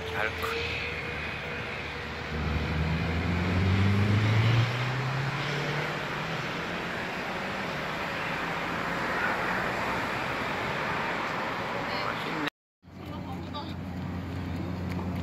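Steady outdoor traffic noise, with a vehicle's engine droning and rising in pitch for about two seconds early in the stretch. The sound cuts out for a moment near the end.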